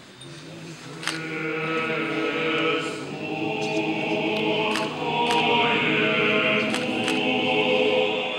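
Orthodox church choir singing a slow sustained chant, the voices swelling about a second in. Several sharp clicks sound over the singing.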